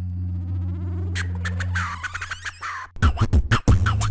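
Electronic TV bumper jingle: a held low synth note under a rising sweep, then a quick run of sharp drum hits about three seconds in.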